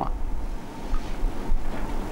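Low, uneven rumble of background noise over a faint hiss.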